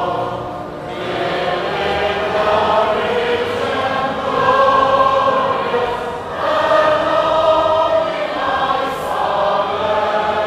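Many voices singing a hymn together, holding long notes, with short dips between phrases about half a second in and about six seconds in.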